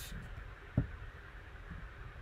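Quiet room tone with one short, soft thump a little under a second in.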